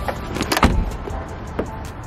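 A car door being handled: a few sharp clicks and a thump about two-thirds of a second in, then a smaller click later on.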